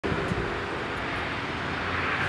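Steady background noise, a low hum and hiss with no distinct events.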